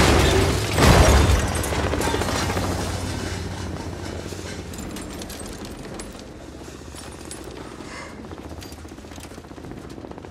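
A tumbling car slams down with a heavy crash about a second in, then a long, fading crackle and rattle of debris and broken glass settling as the wreck comes to rest.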